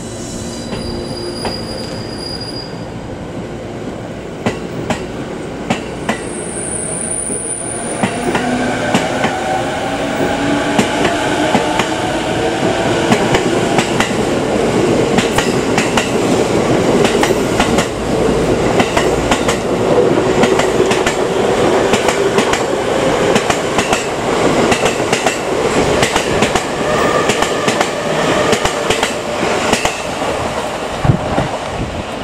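E217-series electric train pulling away and gathering speed. The traction motors' whine climbs in pitch from about a quarter of the way in, over repeated clacks of the wheels on the rail joints, and the whole sound grows steadily louder as the cars roll past.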